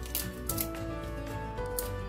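Background music with held tones, with a few crisp snaps of bok choy stalks as they are pulled off the base by hand.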